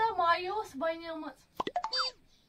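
A woman's voice with sliding, drawn-out pitch for about the first second and a half, then a few short sharp clicks and a quick falling tone near the end.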